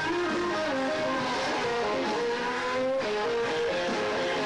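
Live electric guitar lead over a band: single sustained notes with a slow upward string bend held through the middle, then a new note a little higher near the end.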